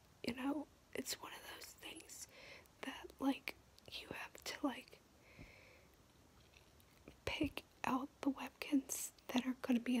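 Whispered speech: one person talking softly in a whisper, with a pause of about two seconds midway.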